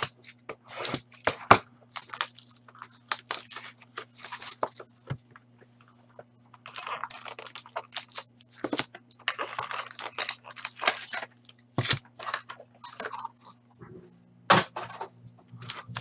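Shrink-wrap on a Black Diamond hockey card box being slit with a box cutter and torn away, then plastic crinkling and cardboard rustling as the box is opened and a pack is pulled out. It comes as a run of short, irregular rips and crinkles over a faint steady low hum.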